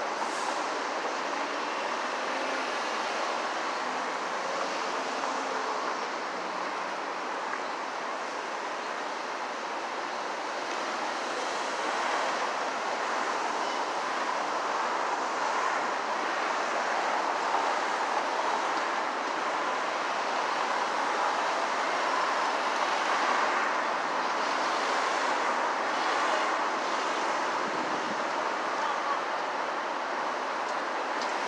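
Steady city street traffic noise: a continuous hiss of cars passing through an intersection, a little louder in the second half.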